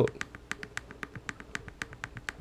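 A quick, even run of small clicks, about seven a second, from the Raspberry Pi spectrum-analyser unit as the zoom-out button on its Adafruit TFT screen is pressed.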